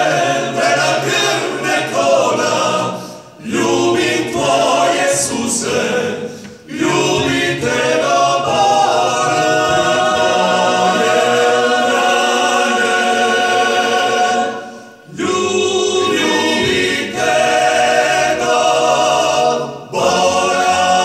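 A Dalmatian klapa, a male vocal ensemble, singing a cappella in close harmony. The singing breaks off briefly between phrases about three, six and fifteen seconds in.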